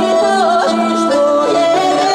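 A woman singing an ornamented folk melody, her voice bending and sliding between notes. Accordion and cello play held notes beneath her.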